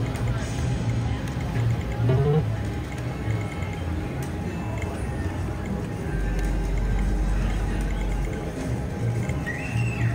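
Casino floor ambience: background music and faint voices, with a low rumble in the second half.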